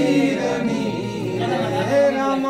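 Voices singing a devotional song together, with long held notes.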